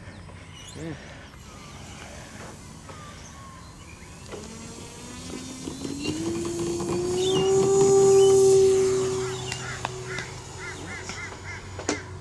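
Electric RC Rare Bear warbird's E-flite 110 brushless motor and three-blade propeller spooling up for the takeoff run. The whine rises in pitch, is loudest about eight seconds in, then fades as the plane climbs away.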